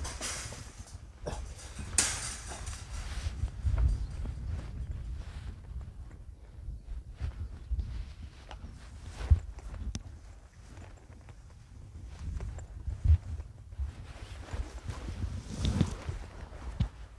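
Footsteps and rustling through overgrown grass and weeds, over a steady low rumble, with a few sharp knocks along the way.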